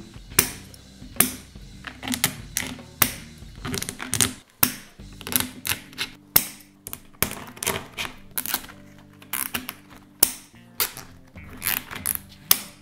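Plastic cable ties clicking as they are threaded and pulled tight around an LED strip, a sharp click about every second, some in quick clusters, over soft background music.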